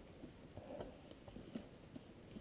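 Near silence with a few faint, scattered ticks and rustles; the fallen dirt bike's engine is not running.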